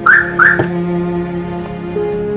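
Car alarm chirping twice in quick succession, about half a second apart, as the car is unlocked by remote. Sustained background music plays underneath.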